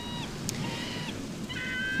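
Gulls calling: three short, high calls about a second apart, over a faint steady background hiss from the shore.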